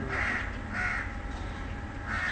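A bird calling over and over, short calls about every two-thirds of a second, over a steady low hum.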